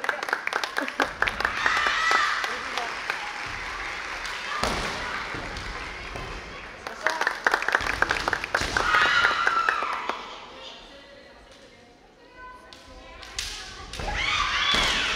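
Kendo bout: fencers' kiai shouts, clattering bamboo shinai and stamping footwork on a wooden floor, in two flurries, the first in the opening seconds and the second from about seven to ten seconds in, with a quieter lull near the end.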